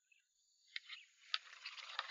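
A hooked grass carp splashing and thrashing at the water's surface, in a few sharp splashes that start about half a second in and grow busier toward the end.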